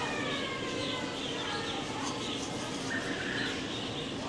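A flock of budgerigars chirping and warbling, with thin gliding whistles over a steady background of chatter.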